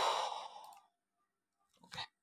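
A man's sigh into a close microphone, a breathy exhale that fades out within the first second. A short faint click comes near the end.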